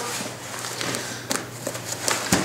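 Nylon fabric and webbing of a Triple Aught Design Spectre 46L backpack rustling as the pack is handled on a tabletop, with a few light clicks and knocks.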